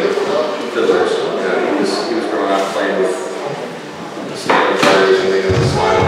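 A man talking in a large hall, with a sudden thump about four and a half seconds in.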